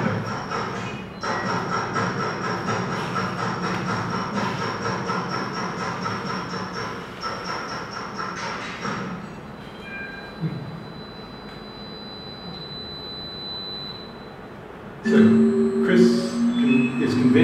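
Soundtrack of a performance video played through the lecture hall's speakers: dense electronic sound with steady high tones, thinning out about nine seconds in, then a sudden louder burst of sound about a second before the end.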